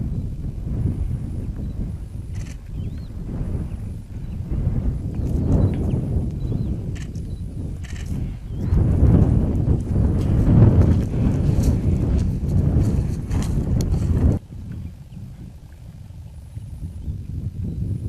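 Wind buffeting the microphone in gusts, a low rumble, with footsteps on dry tilled soil. About fourteen seconds in the rumble cuts off suddenly to a quieter outdoor hush.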